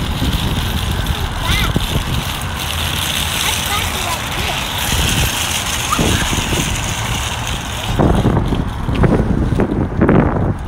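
Small wheels of a toy metal shopping cart rolling and rattling steadily over rough asphalt.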